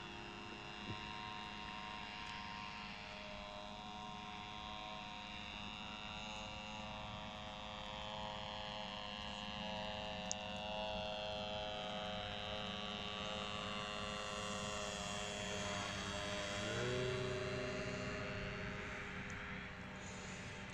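Radio-control model aircraft's motor and propeller heard in flight from a distance as a steady, many-toned drone; the plane is fitted with an undersized propeller. About three-quarters of the way through, the pitch rises and the drone grows louder before easing off.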